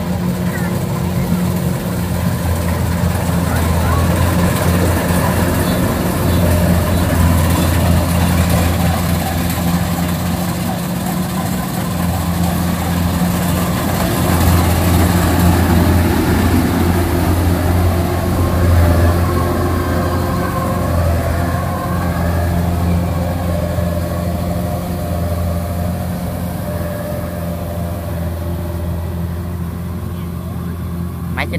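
Kubota DC-93 rice combine harvester running steadily while cutting rice, a constant low engine and machinery drone. It is loudest about halfway through, as the machine passes close by.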